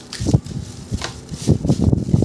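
Coarse salt being handled by hand in a glass baking dish: a few short, irregular rustles and scrapes of salt grains against glass.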